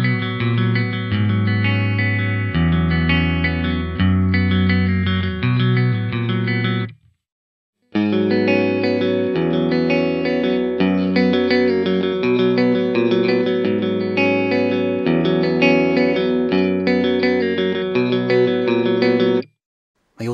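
Clean electric guitar (an Xotic Telecaster) played through the Mooer GE300's amp simulator: first its Hiwatt DR-103 model with a 4x12 cabinet, which has a full, hi-fi sound. After about a second of silence, the guitar plays through the clean Vox AC30 model with a 2x12 cabinet, with plenty of cabinet resonance.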